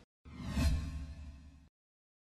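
Whoosh transition sound effect over a low rumble, swelling to a peak and fading away over about a second and a half.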